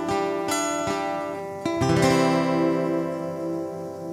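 Acoustic guitar fingerpicked, with single notes ringing over one another. About two seconds in, a fuller chord is struck and left to ring and fade.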